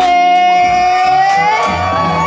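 A woman singing one long held note through a PA, over a backing track with a steady low bass line.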